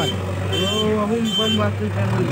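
JCB 3DX backhoe loader's four-cylinder diesel engine running steadily as the machine drives and pushes soil with its front loader bucket. A short high beep repeats about every three-quarters of a second, and voices talk over it.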